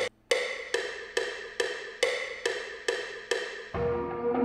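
A pitched, wood-block-like percussion sample from a beat being programmed in FL Studio, played back through studio monitors: one hit, a short gap, then an even loop of about two and a half hits a second. Just before the end it gives way to a sustained ringing tone.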